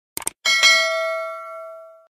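Sound effect of a quick double mouse click, then a single bright bell ding that rings out and fades over about a second and a half: the notification-bell chime of a subscribe button animation.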